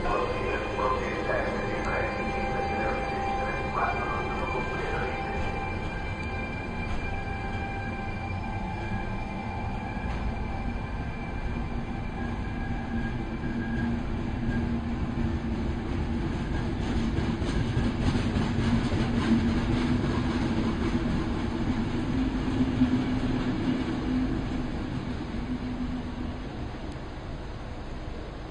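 Regional passenger train hauled by an FS E464 electric locomotive moving along the platform: a steady rolling rumble with several high whining tones in the first few seconds, and a low hum that builds through the second half and eases off right at the end.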